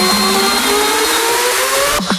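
Electronic dance music build-up: the pulsing beat fades out near the start and a synth riser climbs steadily in pitch.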